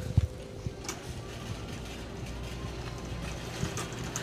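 Grocery store ambience: a steady low hum and rumble, with one sharp thump just after the start and a few faint clicks.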